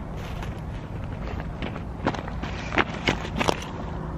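Wind rumbling on the camera microphone by a lake shore, with a few short crunches of steps or movement on the stones around the middle and near the end.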